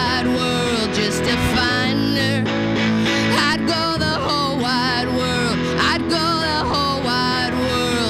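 Live song: a woman singing over her own electric guitar, her voice wavering in pitch.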